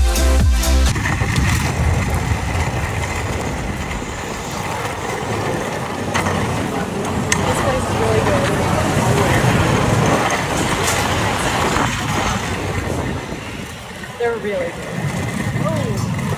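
Dance music cuts off about a second in, then the wheels of Gawds Aton inline skates roll over rough pavement in a steady rumble, with faint voices now and then.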